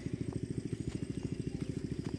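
A small engine running steadily, a fast even putter of many pulses a second.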